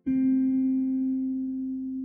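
Slow, relaxing guitar music: a single plucked note is struck right at the start and rings on, slowly fading, after a brief silence.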